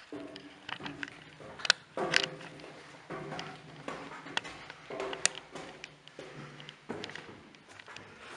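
Irregular footsteps and clanks on steel chequer-plate stairs, several of the steps ringing briefly.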